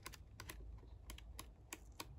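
Pages of a 6x6 scrapbook paper pad flicked one after another under a thumb: a faint run of quick paper clicks, about four a second.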